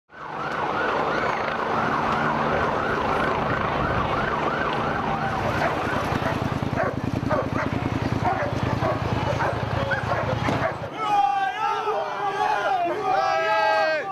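A fast-wavering emergency siren over busy street noise. Heavy vehicle engine noise follows, and about eleven seconds in there are loud, pitched calls of shouting voices.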